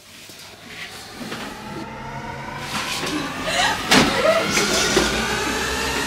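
A swelling tone, several pitches climbing slowly together and growing louder over several seconds, with brief children's voices about halfway through.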